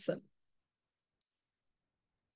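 A woman's spoken word trails off in the first moment, followed by near silence on the call line, broken only by one faint short tick about a second in.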